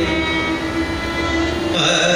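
Electronic tanpura drone holding a steady stack of pitches, with a low rumble underneath. A male voice glides back in near the end.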